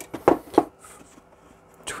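Light plastic clicks and knocks from handling the 3D-printed parts of a lamp base, three of them within the first second.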